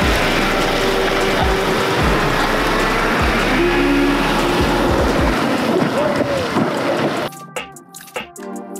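Rushing water and spray from an electric jet surfboard taking off and planing at speed, with background music underneath. About seven seconds in, the water noise cuts off suddenly and only music with a beat remains.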